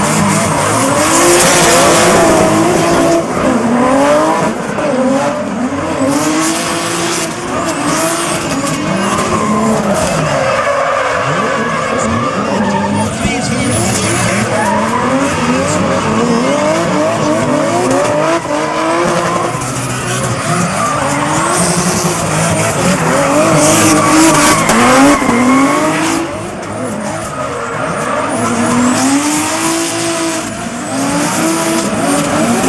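Two drift cars in a tandem slide, their engines revving up and down again and again while the rear tyres spin and skid on the asphalt, throwing off heavy smoke.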